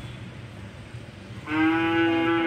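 A loud, long call held on one steady pitch starts about a second and a half in, over a low background hum.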